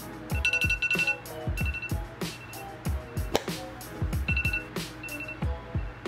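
Smartphone alarm beeping in short repeated groups of high tones over background music with a steady beat.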